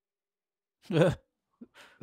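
A short sigh about a second in, its pitch falling, after dead silence, followed by a couple of faint breath noises.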